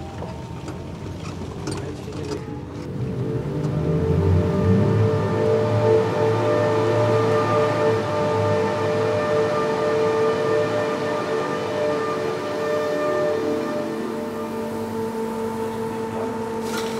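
A vehicle engine rumbles heard from inside the cab as it drives into a mine tunnel. Over it several steady droning tones are held, swelling about four seconds in and carrying on to the end.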